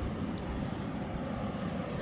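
Steady rushing hiss of steam venting from a fumarole in geothermal ground, over a low rumble.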